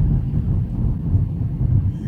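Steady low rumble of engine and road noise heard inside the cabin of a moving Opel car.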